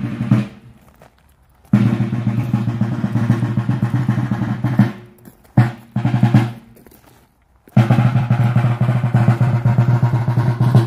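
Rope-tension military side drum beaten with sticks in a march cadence: a brief stroke at the start, a long roll from about two seconds in to about five, a few short strokes, then another long roll from near eight seconds on.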